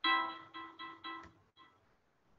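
A short musical sound effect from the quiz app: a bright note struck four times in quick succession, each fading, with a fainter fifth about a second and a half in.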